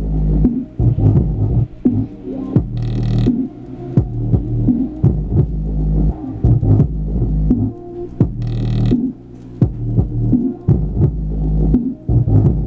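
Electronic dance music with a steady, heavy bass beat, played through a CDR King Jargon 2.1 computer speaker system's 20-watt subwoofer as a bass excursion test. A short burst of hiss comes in twice, about three seconds in and near nine seconds.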